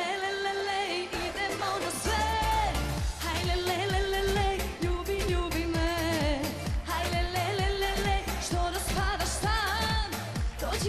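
Serbian pop-folk song with a woman's lead vocal over band accompaniment; a steady, heavy dance beat comes in about two seconds in.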